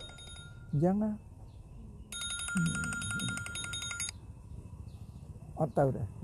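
An electronic ring like a telephone's: a fast trill over several steady tones, lasting about two seconds from about two seconds in.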